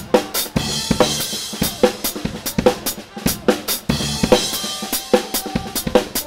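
Drum kit played live in an upbeat band groove: kick drum, snare backbeat and cymbals in a steady rhythm of a few strikes a second, with the band's held notes underneath. Heard from right at the kit, so the drums sit loud and close over the rest of the band.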